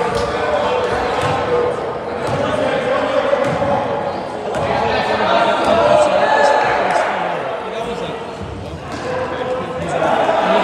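A basketball bouncing on a gym floor as it is dribbled, over players' and spectators' voices calling out, echoing in the large gym.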